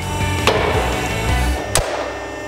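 Metal punching machine punching holes through a steel bar: a clunk about half a second in and a sharper one near the end, over the machine's low hum, which drops away after the second.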